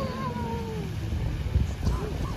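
A drawn-out voice-like call sliding down in pitch at the start, over a steady low rumble.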